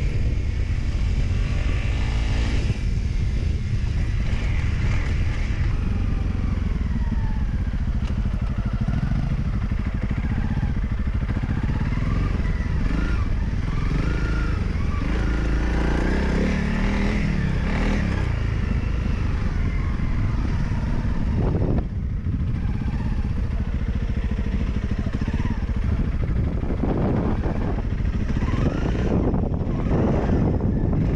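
Honda CRF dual-sport motorcycle's single-cylinder four-stroke engine running under way, heard from on the bike, its revs rising and falling as the rider accelerates and shifts.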